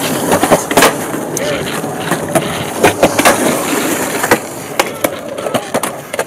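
Skateboard wheels rolling loudly over rough concrete, with about five sharp clacks of the board and trucks striking.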